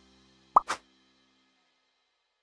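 A short pop sound effect for an on-screen title: a quick rising blip about half a second in, followed at once by a brief swish, over the last faint tail of fading music.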